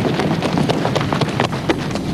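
Several people sprinting on a sports-hall floor: a rapid, uneven patter of running footfalls.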